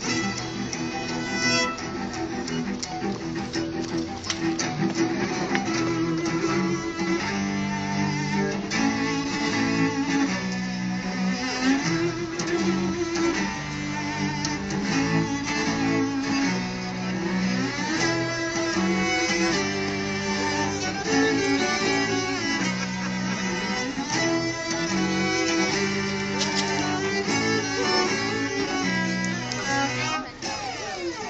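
A quartet of four cellos playing a piece together, with held bowed notes that step from one pitch to the next without a break.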